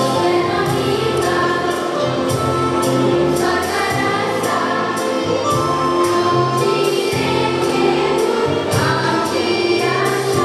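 Girls' choir singing in sustained harmony over a steady percussive beat.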